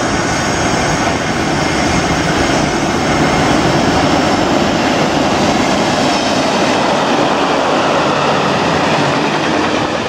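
A freight train passing through a station at speed: the locomotive runs by, then its wagons roll past with a steady noise of wheels on rail, loudest a few seconds in.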